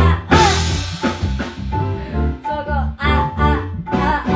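Band music with guitar and drums playing a steady beat, a woman's voice singing over it into a microphone.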